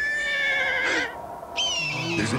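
Animal cries used as a sound effect: a call that rises quickly and holds a wavering pitch for about a second, then a shorter, higher call that falls slightly near the end.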